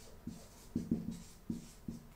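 Dry-erase marker squeaking on a whiteboard in about five short strokes as words are handwritten.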